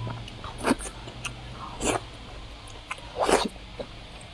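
Close-up eating mouth sounds: three loud wet slurps, about a second apart, as a long strip of braised meat is sucked in from chopsticks, with a few small smacking clicks between them.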